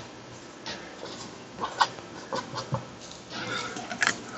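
Dry-erase marker squeaking and scratching in short strokes as letters are written on a panel coated with dry erase paint.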